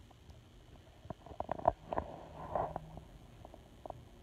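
Handling noise from the camera being picked up and moved: a cluster of small clicks and knocks with a brief rubbing sound in the middle, then a single click near the end.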